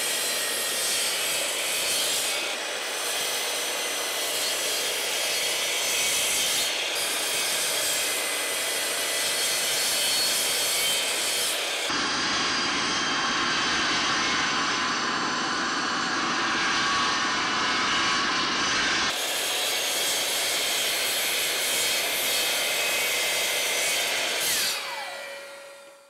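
Bosch GCM12SD 12-inch sliding miter saw running and cutting through a wooden block, with a shop vacuum drawing dust off through the chute and hose. The sound changes character for several seconds in the middle. Near the end it winds down with a falling whine and stops.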